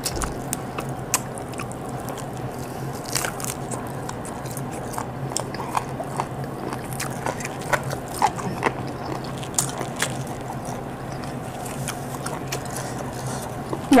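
Close-miked mouth sounds of biting and chewing tender boiled chicken eaten by hand: irregular small wet clicks and smacks, over a faint steady low hum.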